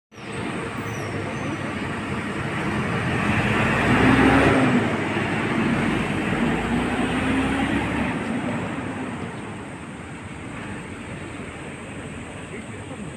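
A city bus driving off past the microphone. Its engine and road noise build to a peak about four seconds in, with an engine tone that wavers up and down, then fade over the last few seconds as the bus moves away.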